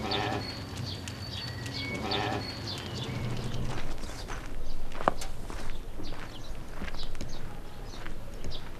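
A flock of sheep and goats bleating, with two calls: one at the start and one about two seconds in. From about halfway through come short irregular knocks of footsteps on a dirt lane.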